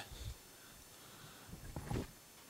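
Faint handling noise as a metal steering-head bearing-seat insert is set into the steel headstock of a Yamaha DT400 frame, with a few soft knocks near the end as it is placed.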